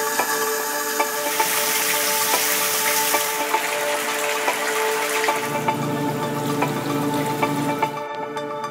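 Tap water running into a basin, a steady hiss that changes in character partway through, over background music with a steady beat.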